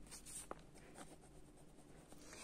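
Faint scratching of a pen writing on a notebook page, with one small tick about half a second in.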